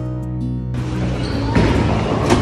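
Guitar music, cut off about three quarters of a second in by the din of a bowling alley. About a second and a half in, a bowling ball thuds onto the wooden lane and starts rolling, over background chatter.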